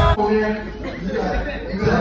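Band music cuts off abruptly right at the start, giving way to indistinct chatter of several voices in a large hall.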